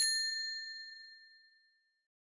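Notification-bell ding sound effect of a subscribe-button animation: a single chime ringing out and fading away over about a second and a half.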